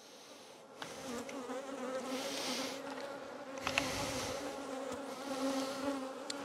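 Honey bees buzzing in a steady drone around an open nucleus hive as its frames are lifted out; the hum swells about a second in and holds.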